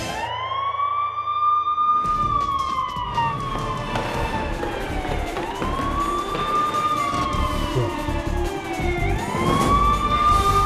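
Police-style siren wailing in slow cycles: each rises quickly, then falls away slowly over about four to five seconds, three times. A dense, noisy rumble joins it about two seconds in.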